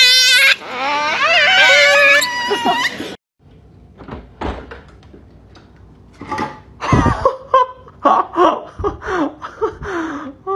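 A plant leaf blown as a grass whistle, giving long high wavering squeaks, with men laughing over it. After a sudden break a little over 3 s in, scattered laughter with a few dull thumps follows.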